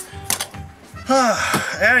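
Background music with a steady pulsing bass beat, and a man sighing near the end.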